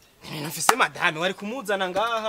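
A man talking, with one sharp click about a third of the way in.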